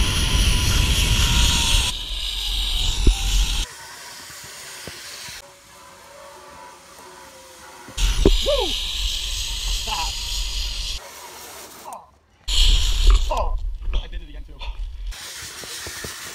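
Rush of wind buffeting the microphone of a rider speeding down a zip line, with a rumble and a thin steady whine from the trolley pulley running on the cable. The rush cuts in and out abruptly several times, with short whoops in between.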